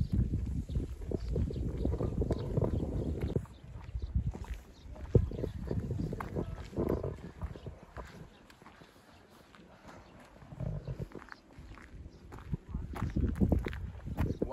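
Footsteps of a person walking on a paved road, with low gusts of wind buffeting the microphone; loudest in the first few seconds, dropping away in the middle, then rising again.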